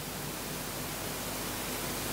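Steady, even hiss with a faint low hum: the room tone and sound-system noise of the hall, with no distinct event.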